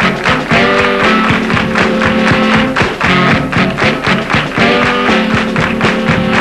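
Funk band playing an instrumental passage: a steady, driving drum beat under held chords and guitar.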